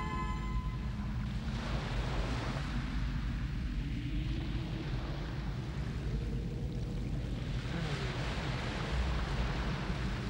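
Sea ambience of waves washing against a harbour, a steady low rumble with a hiss of surf that swells twice.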